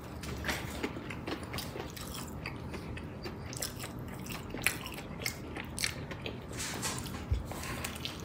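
Close-miked eating sounds of a fried chicken sandwich being chewed: a steady run of small wet mouth clicks and crunches. There is a low thump near the end.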